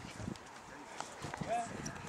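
Faint voices of onlookers talking, one voice rising briefly about halfway through, with scattered light knocks and scuffs.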